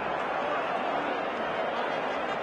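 Crowd murmur: many voices chattering at once in a steady wash of sound.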